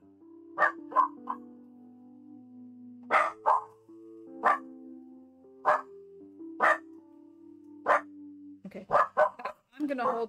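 A dog barking in short single and double barks about every second, over background music, with a quicker flurry of barks near the end.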